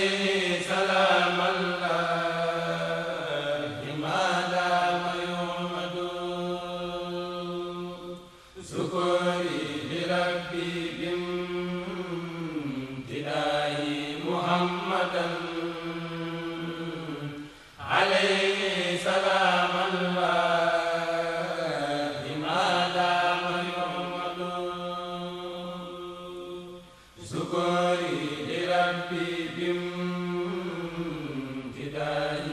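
A Senegalese Mouride kourel chanting an Arabic devotional qasida in unaccompanied male voices. The melody moves over a steady held low note, in long phrases with a brief breath about every nine seconds.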